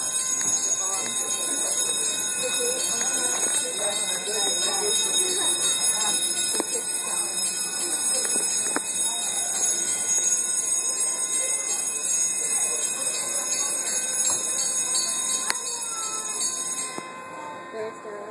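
Drawbridge traffic warning bell ringing continuously, the signal that the road gates are down and the bridge is opening; it stops abruptly near the end. Voices of onlookers talk underneath it.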